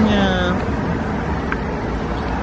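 Steady rumble of street traffic under a single spoken 'nie' at the start.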